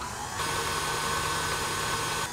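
KitchenAid Artisan stand mixer running, its electric motor giving a steady whine as the flat beater mixes thick batter in the steel bowl; it starts about half a second in.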